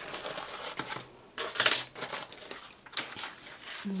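Dry autumn leaves of a leaf bowl crackling and rustling as the bowl is handled, with a louder, crisp crackle about a second and a half in.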